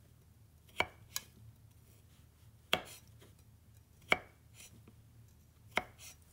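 Kitchen knife cutting into carrot slices on a wooden cutting board: five separate sharp knocks, a second or more apart.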